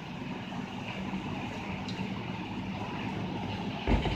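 Steady low background hum, then a single heavy thud near the end as a breakdancer's body drops onto the carpeted gym mat going into a windmill.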